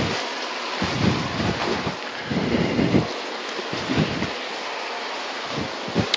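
Steady rushing noise with irregular low rumbles coming and going every second or so, like wind and handling noise on the microphone as it is carried.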